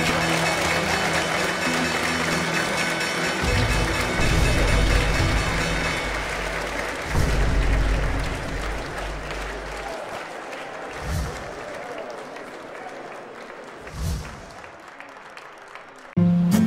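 Closing music, dense and hissy, with deep low hits every few seconds, fading out gradually through the second half.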